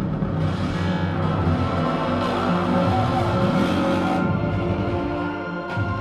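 Live experimental music from a two-person act: layered sustained tones over a low drone, with washes of hiss coming and going. It thins briefly near the end.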